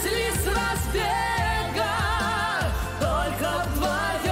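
Live pop ballad duet with a band and orchestra: a singer holds long notes with wide vibrato, with no words transcribed, over a steady bass line and regular drum beats.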